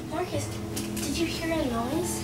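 A child's voice, untranscribed and probably a whispered question, over steady, sustained background music.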